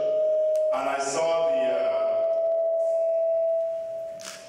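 Microphone feedback through the PA loudspeaker: a steady ringing tone that breaks off briefly about a second in, then comes back a little higher and rings on until near the end.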